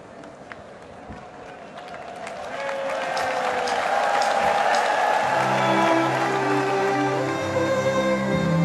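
Scattered clapping over faint crowd noise, then an orchestra fades in about two seconds in with held string notes that swell in level; low strings enter about five seconds in, opening a song's orchestral introduction.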